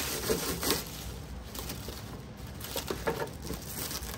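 Thin plastic wrap rustling and crinkling as it is pulled off a fiberglass cowling, with short crackles every second or so.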